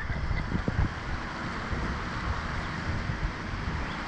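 Wind buffeting the ride's onboard camera microphone: a steady low rushing noise, with a faint knock or two just under a second in.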